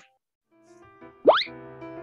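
Children's learning-video soundtrack: after a brief hush, soft music comes in. Just over a second in, a single quick sound effect sweeps sharply upward in pitch.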